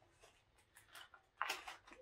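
Small clear plastic package of model kit parts being handled and pried open: faint crinkles and clicks, then a louder plastic rustle about one and a half seconds in.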